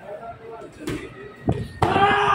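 Three sharp thuds from a kumite sparring exchange: one about a second in and two close together near the end, the last followed at once by loud voices.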